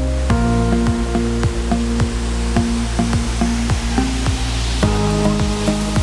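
Background music with a steady beat over the continuous rush of a river and waterfall.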